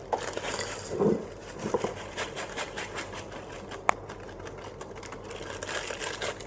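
Rapid crackling and rustling of something being handled over a bowl, a dense run of small clicks with one sharp click about four seconds in.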